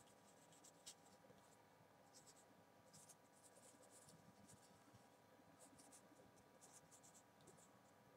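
Very faint marker pen writing on a whiteboard: a string of short, irregular, high-pitched strokes as a sentence is written out letter by letter.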